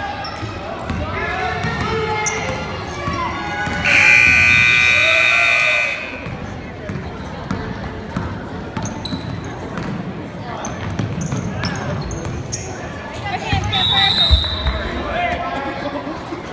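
Gym scoreboard buzzer sounding one steady, loud blast of about two seconds, starting about four seconds in. Around it are the voices of players and spectators and the bounce of a basketball on the hardwood floor.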